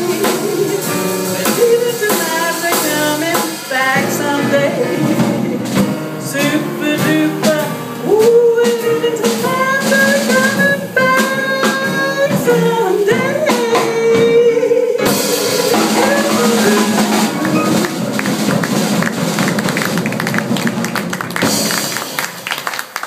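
Live jazz quartet: a female vocalist sings over piano, double bass and drum kit, closing on a long held note. About fifteen seconds in the song ends and audience applause takes over while the band lets the last chord ring.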